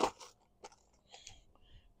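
A clear plastic rivet assortment box handled and set down: a sharp click at the start, then a few faint ticks and small rattles.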